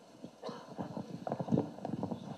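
Handling noise from a handheld microphone being turned over in the hands: a string of irregular light clicks and knocks, growing busier about half a second in.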